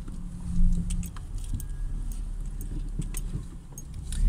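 Car cabin noise while driving: a steady low rumble of engine and road, with a scatter of small sharp clicks and light rattles over it.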